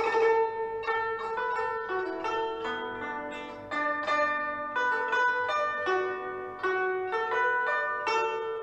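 Guzheng, the Chinese plucked zither, played: a melody of plucked notes that ring on, dipping to lower notes about three seconds in before climbing back up.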